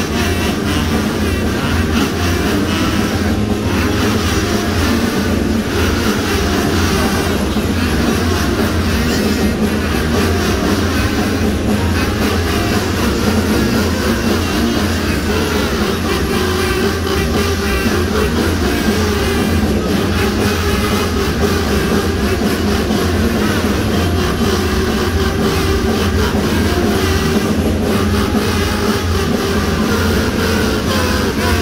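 Middle-school concert band playing, with woodwinds, brass and percussion together. The sound is loud and unbroken, with long held notes.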